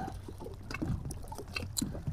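Lake water lapping in small, scattered splashes over a steady low rumble.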